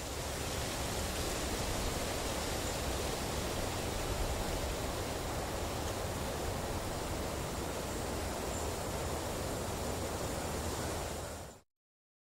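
Steady rushing noise with no tune or rhythm, like wind or surf, after the music has ended. It cuts off abruptly near the end.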